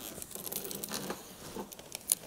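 Clear plastic protective film being peeled off a monitor screen, a quiet run of small crinkles and crackles.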